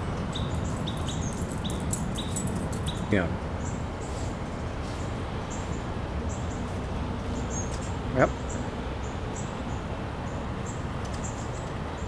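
A small bird calling with short high chirps, about two a second, over a steady low outdoor rumble.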